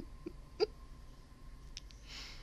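A woman giggling under her breath: three or four short bursts within the first second, the last the loudest, then only faint room tone.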